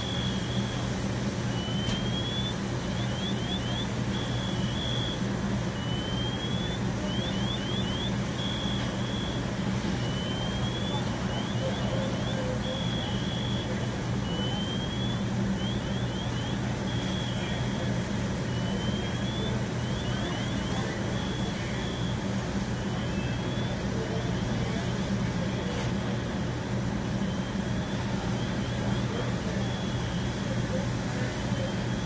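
Steady low hum of an idling engine, typical of fire apparatus standing at the scene. Over it a faint electronic alarm cycles about every four seconds through a rising sweep, a quick run of short chirps and a few flat beeps, as a multi-tone car alarm does.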